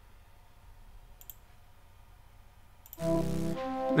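A couple of faint mouse clicks over near silence. About three seconds in, playback of a synthesized flute melody starts suddenly, with sustained notes.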